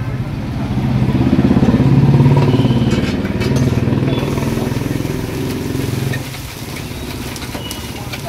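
Motorcycle engine running close by, growing louder to a peak about two seconds in, then dropping away about six seconds in.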